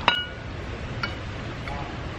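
A single sharp clink of tableware at the start, ringing briefly, then a fainter click about a second later, over a steady low background hum.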